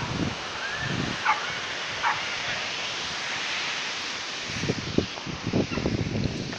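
Footsteps on a dirt trail, a run of dull thuds in the second half, over a steady outdoor hiss. Several short high calls from an animal come in the first half.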